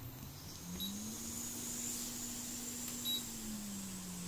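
A hot air rework station's blower fan humming as it spins up, rising in pitch about half a second in, holding steady, then falling back near the end. Two short high beeps sound about a second and three seconds in, as the station is set to desolder a blown MOSFET.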